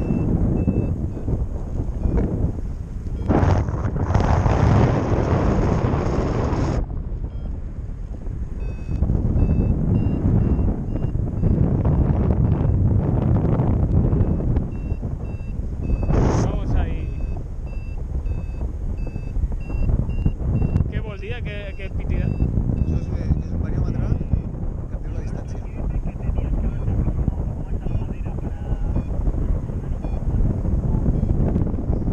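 Airflow of a paraglider flight buffeting the camera microphone: a loud, rough rush that swells a few seconds in and again midway. Faint short high beeps repeat through the middle, typical of a paragliding variometer.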